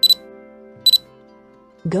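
Two short, high electronic pings, about a second apart, over steady background music.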